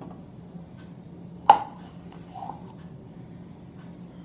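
Handling noise of a toothbrush and drinking glass at a countertop: one sharp clink about a second and a half in, a softer knock a second later, over a steady low hum.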